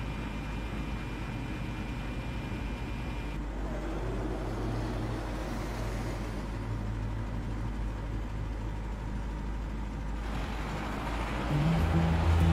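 Steady low engine rumble of a jeep-type off-road vehicle driving along a road. Just before the end, music with sustained low notes comes in.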